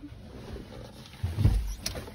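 Vehicle door being opened from outside: a low rumble of the door moving about one and a half seconds in, then a single sharp click just before the end.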